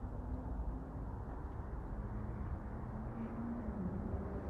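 Steady low outdoor rumble with a faint hum underneath, with no distinct events.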